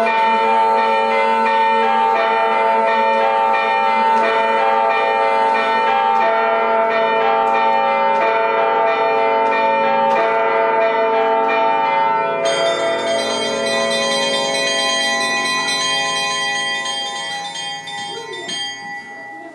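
Electronic carillon voiced with samples of the Liberty Bell (Laisvės varpas), played from a keyboard: bell notes struck over long ringing. About twelve seconds in it settles into a held, ringing chord that fades near the end.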